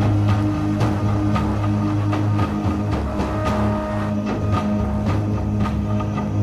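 Didgeridoo playing a steady low drone in live band music, with drum or cymbal strikes about twice a second over it.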